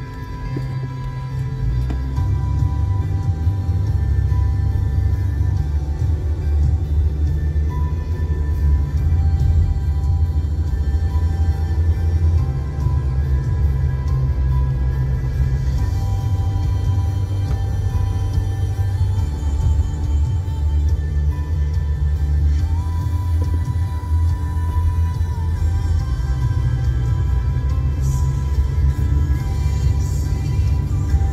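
Music with a deep bass of held notes that shift every couple of seconds, over steady sustained higher tones; it swells up over the first two seconds.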